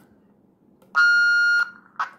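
A single steady electronic beep, about two-thirds of a second long, from a wireless intercom as its talk button is pressed, followed by a short click near the end.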